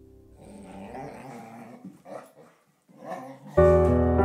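Dogs play-growling as they wrestle, the growls rough and uneven, with a short gap in the middle. Soft music stops just before the growling starts, and loud piano music comes in near the end.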